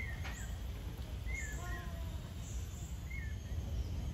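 Birds calling in several short chirps scattered through, over a steady low background rumble.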